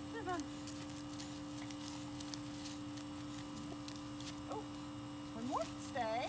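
A steady low hum, with faint voices briefly near the start and again near the end.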